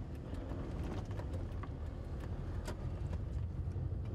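A car driving, a steady low rumble of engine and tyres with scattered faint ticks.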